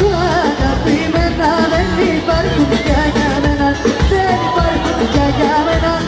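A live band playing amplified music with a lead vocal singing a wavering, ornamented melody over a steady beat.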